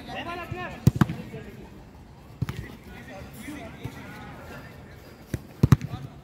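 Football kicked during play on artificial turf: sharp thuds of the ball, two in quick succession about a second in, one more midway, and a quick cluster near the end, with players shouting in between.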